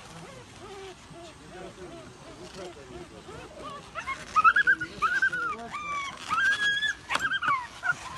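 A puppy trapped in a hole in a wall whimpering, then crying out in high, rising and falling yelps through the second half. A single sharp snap comes near the end as bolt cutters cut at the edge of the hole.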